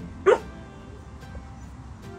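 A dog barks once, a short yip that rises quickly in pitch, about a quarter of a second in, during play between two dogs.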